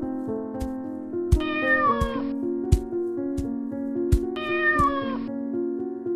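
A house cat meowing twice, each call falling in pitch, about three seconds apart, over background music with a light steady beat.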